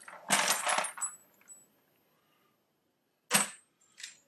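Spent .45 brass pistol cases rattling and clinking together in a hard-plastic shell sorter as it is shaken, for just under a second. A single short clatter of brass follows near the end.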